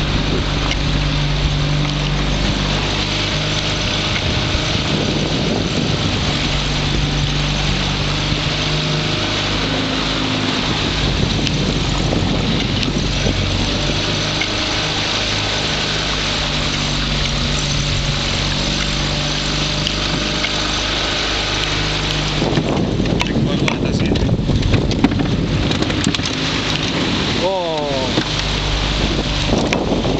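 Motorboat engine running steadily under way, with water rushing along the hull and wind on the microphone. From about three-quarters of the way in, irregular clicks and knocks join in.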